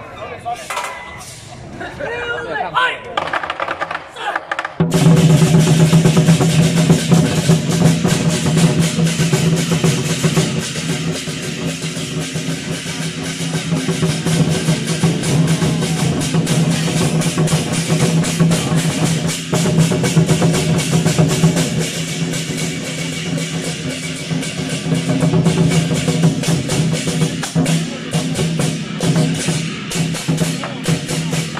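Taiwanese temple war drum troupe: large barrel drums and big hand cymbals start up together suddenly about five seconds in, then play a loud, dense, continuous beat of drums and clashing cymbals.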